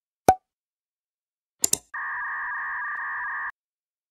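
Sharp clicks, one single with a short popping tone and one a quick double click, then a steady electronic tone lasting about a second and a half.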